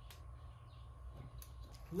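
Quiet workshop room tone: a steady low hum with a faint steady high tone, and two faint light clicks from small parts being handled. Speech begins right at the end.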